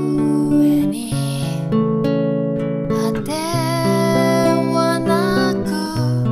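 Nylon-string silent guitar playing slow chords, each ringing about a second before the next.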